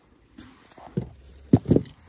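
Rustling with a few dull thumps, the loudest two close together about a second and a half in.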